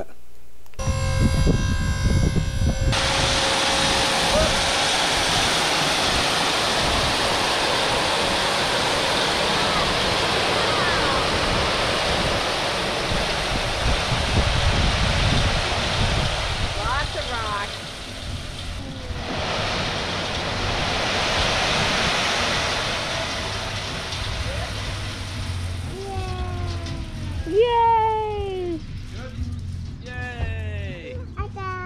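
A load of crushed stone sliding out of a raised dump-trailer bed onto the ground: a long, steady rush that dips briefly about 18 seconds in and fades out a few seconds before the end. A whining motor, the trailer's hydraulic pump, sounds under it for the first couple of seconds.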